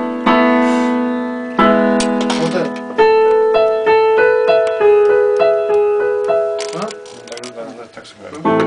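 Electronic keyboard playing in a piano voice: two held chords, then from about three seconds in a slow melody of single notes, each fading away, with the playing trailing off near the end.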